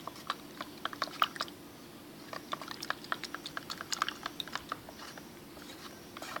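A stick stirring liquid handwash in a plastic measuring jug, clicking and knocking against the jug's sides in quick irregular clicks, in two bursts about a second apart.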